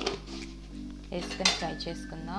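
Metal utensil clinking against a metal kadai and steel dishes, a few sharp strikes with the loudest cluster about three-quarters of the way in, over background music.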